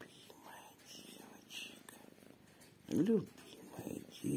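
Domestic cat purring close to the microphone, with a short, louder voiced sound with a bending pitch about three seconds in.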